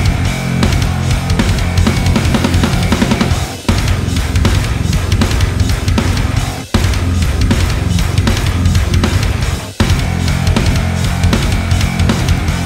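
Extended-range electric guitar played in a heavy, rhythmic metal riff. The riff stops dead for a moment three times, about every three seconds, before picking straight back up.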